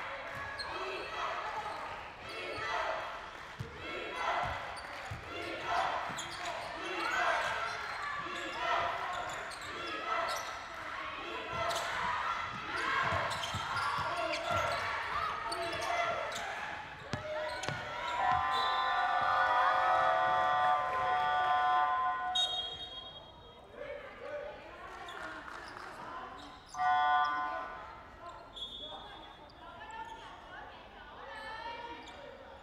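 A basketball bouncing on a hardwood court, with squeaks and players' voices echoing in a large, mostly empty hall. About two-thirds through, a loud steady multi-pitched tone sounds for around four seconds, and a shorter loud one comes near the end.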